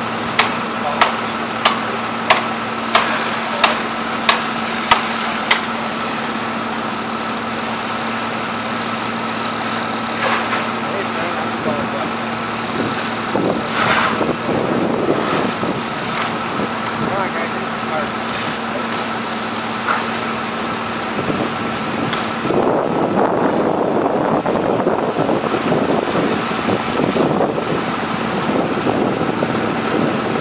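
A fire truck's diesel engine running steadily at the fireground, a low hum, with a regular clicking about one and a half times a second for the first few seconds. A little over twenty seconds in the hum drops out and a louder, rough rushing noise takes over.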